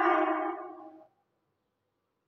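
A woman's voice holding out a last word, fading away about a second in, then silence.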